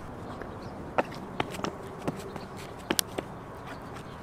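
A few light clicks and taps as sneakers step onto a small bamboo penny board, over a faint steady outdoor hum.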